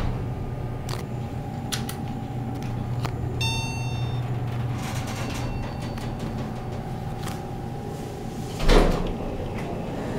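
Montgomery hydraulic elevator car travelling upward: a steady low hum with a faint whine above it and a few light clicks. A short chime sounds about three and a half seconds in. Near the end comes a louder rush with a thump.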